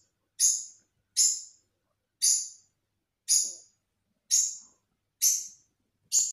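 A short, high, hissy chirp repeated six times, about once a second, each one starting sharply and fading quickly: an edited-in sound effect over the end credits.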